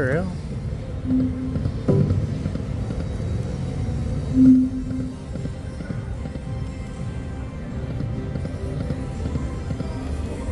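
Neptune Power Link video slot machine's game music and spin sound effects over background casino chatter: a rising sweep as a spin starts, a knock about two seconds in, and short tones about a second in and, loudest, about four and a half seconds in.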